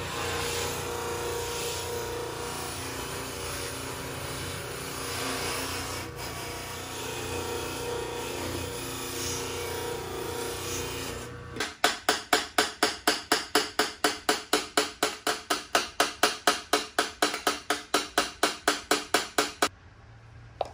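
Electric bench buffing motor running steadily with its wheel spinning, with a steady hum. About eleven seconds in it cuts off abruptly and a fast, regular pulsing beat of about four strokes a second takes over until just before the end.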